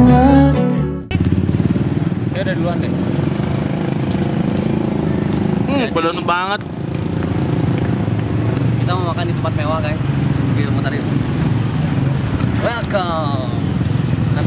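Background music that cuts off about a second in, followed by the steady low rumble of street traffic engines, with short bits of people's voices rising over it now and then.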